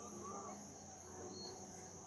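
Faint, steady high-pitched background noise in a pause between speech.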